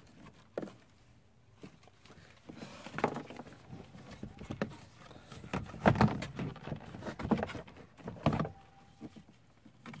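Scattered clicks and knocks of hard plastic as a 2005 Honda Accord's power-window master switch panel and its wiring connector are handled and worked at, the connector refusing to release. The loudest knocks come about six seconds in.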